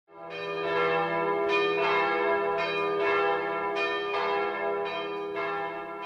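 Bells ringing in a steady peal, a new strike about every half second, each ringing on under the next.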